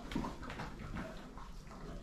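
A horse moving its head and hooves about in straw bedding, giving several short, irregular rustles and knocks.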